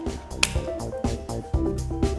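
Background music with plucked notes over a beat of sharp, snap-like percussive strikes.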